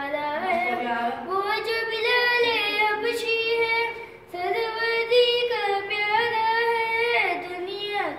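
A boy singing unaccompanied in long, held melodic phrases, with a short break for breath about four seconds in.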